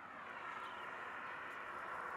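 Faint, steady outdoor background hiss with no clear event in it, swelling slightly over the first half second and then holding even.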